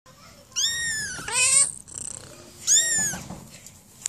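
Young kitten meowing: three high-pitched meows, the first two back to back about half a second in, the third near three seconds in.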